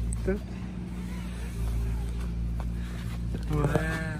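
A steady low machine hum, like a motor running, with a brief voice near the end.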